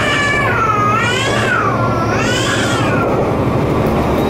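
Diesel railcar running along the track, a steady rumble heard from inside the carriage. Over it a high, wavering tone swoops up and down in phrases of about a second and a half.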